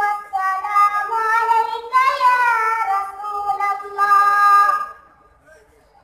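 A young boy reciting the Quran in a melodic chant (tilawat) into a microphone, holding long notes with rising and falling pitch ornaments. The phrase ends about five seconds in and a short pause follows.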